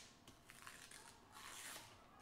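Near silence: room tone with a faint, brief scratchy rustle a little past the middle.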